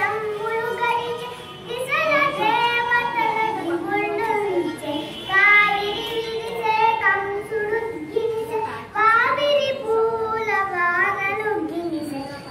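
A young girl singing solo in melodic phrases with long held notes, pausing briefly for breath between lines.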